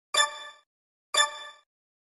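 Two bright metallic dings about a second apart, each ringing briefly and fading, with dead silence between them.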